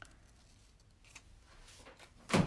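Near silence, with a few faint snips of small scissors cutting thin sticky-note paper.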